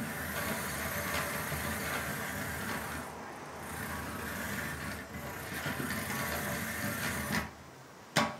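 Small geared motor of a Cubelets drive block running steadily as the robot spins on the table, dipping a little in level partway through and stopping shortly before the end.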